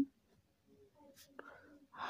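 A faint pen scratching on paper while writing, heard as a few light strokes over a near-quiet room about a second in.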